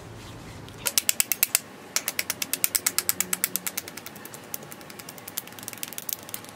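Fingers tapping rapidly on the face and temples in a facial tapping massage, the long stiletto nails clicking sharply with each tap, about ten taps a second. A short run comes about a second in, then after a brief pause a longer run that fades out.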